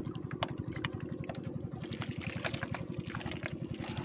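Wet mud squelching and sucking in short scattered clicks as gloved hands work down into a mud hole. Under it a small motor runs steadily with a fast, low pulsing.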